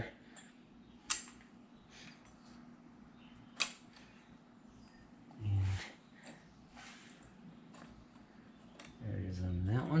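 Two sharp, brief metal clicks, about a second in and again a few seconds later, as a VW air-cooled engine's crankshaft assembly and its main bearings are handled and set into the aluminium case half. A faint steady hum runs underneath.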